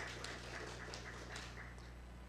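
Light, scattered hand clapping from a small congregation, thinning out over a couple of seconds, over a steady low hum from the sound system.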